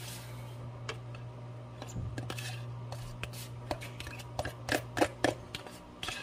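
A metal spoon scraping and clicking against a plastic tub as cottage cheese is scooped out into a mixing bowl, the sharpest scrapes coming in a run past the middle. Under it a washing machine hums steadily, running noisily.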